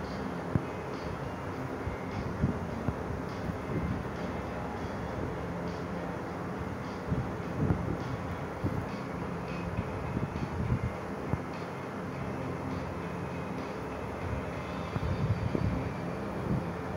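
Steady background noise with a faint low hum, broken by scattered soft knocks and thumps, heaviest near the end.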